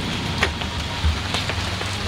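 Steady hiss of outdoor background noise with a low rumble underneath and two faint clicks, about half a second and a second and a half in.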